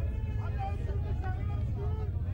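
Several voices shouting and talking on the pitch, picked up from a distance, over a steady low rumble.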